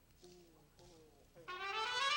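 A Cuban son band piece beginning: a few faint, soft notes, then brass comes in loudly about a second and a half in.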